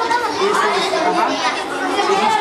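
Several children's voices chattering at once, overlapping so that no single speaker stands out.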